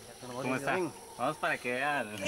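People talking animatedly in short, lively phrases, with the pitch rising and falling.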